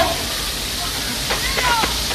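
Water gushing steadily from an open fire hydrant in a loud hiss, with men's shouts and grunts from a fistfight over it in the second half.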